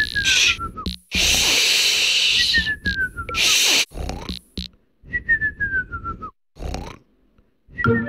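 Three falling whistles, each about a second long, alternating with long 'shhh' shushing hisses as the cartoon characters hush one another. A short pause comes near the end, then flute music starts.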